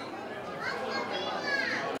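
Crowd chatter: many people talking at once in a crowded room, with children's higher voices among the adults.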